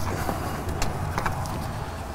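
A steady low background hum, with a few faint clicks as a plastic-sheathed wiring harness is handled.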